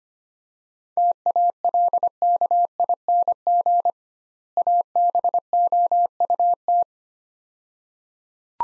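Morse code sent at 25 words per minute as a keyed beep at one steady pitch: two words of dits and dahs, separated by a pause of under a second. This is the two-word set repeated in Morse after it has been spoken.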